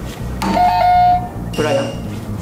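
Quiz answer buzzer sounding: an electronic tone that starts suddenly, drops one step in pitch and holds for about half a second.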